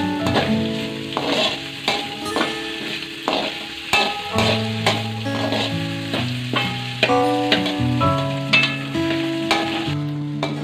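Spices and chillies sizzling in hot oil in a metal wok while a metal spatula stirs them, with frequent scrapes and clicks against the pan. Background music with plucked-string notes plays throughout.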